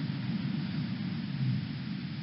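Steady low rumble with a fainter hiss above it, unchanging throughout, with no words: background noise under the narration track.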